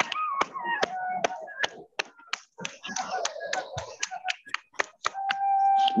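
A quick, irregular run of sharp clicks and taps, several a second, over faint wavering whistle-like tones; a steady higher tone comes in near the end.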